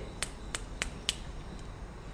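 Four quick finger snaps in a row, about three a second, in the first half.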